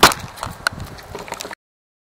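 Camera handling noise on the built-in microphone: a sharp knock, then scattered clicks and rustling. It cuts off abruptly about one and a half seconds in.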